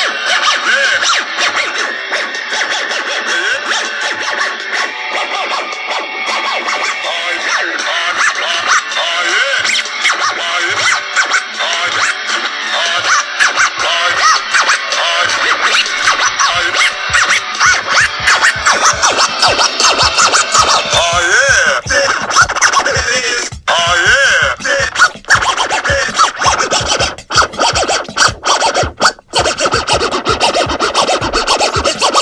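A DJ mix played from djay Pro through a Pioneer WeGO controller, with scratching over the music. In the last third the mix turns choppy, cut by sudden dropouts and sharp stutters.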